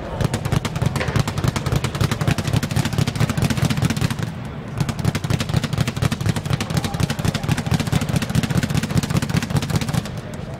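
Leather speed bag being punched in a fast continuous rattle, rebounding off its round wooden platform, with a brief lull a little past four seconds in before the rhythm picks up again.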